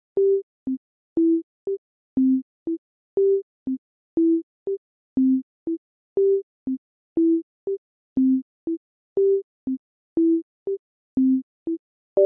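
Simple Csound sine-tone instrument playing a looped sequence of short notes, about two a second, alternating a longer and a shorter note and stepping through three pitches from low to high in turn. Each note starts with a faint click.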